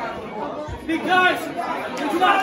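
Shouting voices, with one loud, high-pitched shout about a second in and a dull thud just before it.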